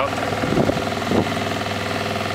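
A small sailboat's motor running steadily, pushing the boat along with no wind to sail.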